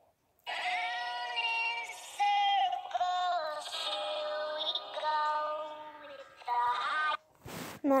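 A song with a singing voice played by the Musical.ly app while a clip records, slowed down by the app's fast mode, with long held notes. It starts about half a second in and stops about a second before the end, followed by a brief burst of noise.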